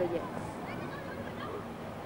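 A woman's voice ends a sentence, then a pause filled by low, steady outdoor background noise, with a few faint, brief high sounds about half a second to a second in.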